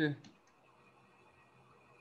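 A brief word fragment at the start, then two faint clicks of a computer mouse in the first half second, followed by quiet room tone with a faint steady hum.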